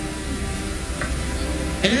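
A steady hiss with a low rumble underneath, and faint sustained background music.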